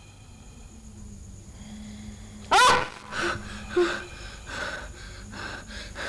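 A person's loud sudden cry or gasp about two and a half seconds in, followed by several short, hard breaths, over a low steady hum: the sound of someone waking with a start from a bad dream.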